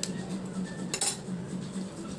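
Metal utensils scraping and clinking against a stainless steel plate as an omelette is cut up, with one sharp clink about a second in.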